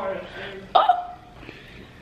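A woman's voice: the tail of a spoken "oh", then about a second in one sudden, short, loud vocal sound that drops in pitch, like a hiccup or yelp.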